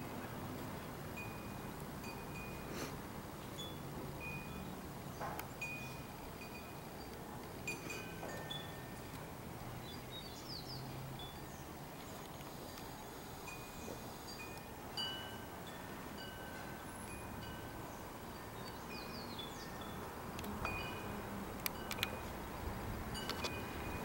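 A wind chime ringing faintly now and then, its short notes at a few fixed high pitches, over a quiet outdoor background.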